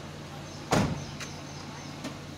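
A minivan's sliding side door slammed shut with one sharp thump a little under a second in, followed by a faint click, over the steady low hum of the idling engine.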